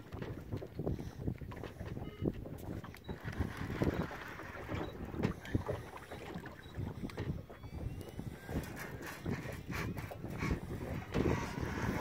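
Wind buffeting the microphone aboard a small boat at sea, with scattered short clicks and knocks.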